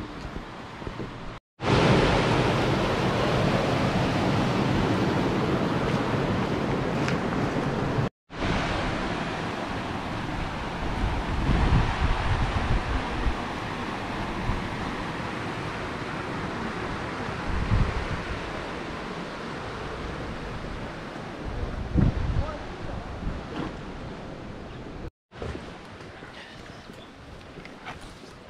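Small river rushing through a sluice: a loud, steady hiss of flowing water. Wind buffets the microphone in occasional low thumps. The sound breaks off briefly three times, at about a second and a half, about eight seconds, and near the end.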